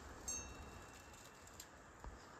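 A single faint metallic ping about a quarter second in, ringing briefly with several high tones: the flag's halyard clip striking the metal flagpole in the wind.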